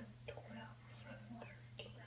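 Faint whispered, mumbled speech, very quiet, over a steady low hum.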